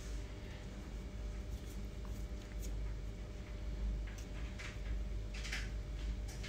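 Double-panel radiator being lifted and hooked onto its wall brackets: a few light scrapes and clicks in the second half, the loudest about five and a half seconds in, over a steady low hum.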